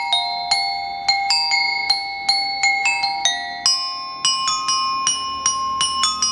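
Metal-bar glockenspiel (drum-and-lyre-corps lyre) struck with hard mallets, playing a melody of single ringing notes at a steady pace of about three to four a second. The melody moves up to higher notes a little past halfway.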